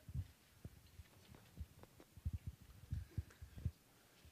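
Faint low thuds of footsteps on a stage floor, a few a second and growing a little stronger in the second half, picked up by a head-worn microphone.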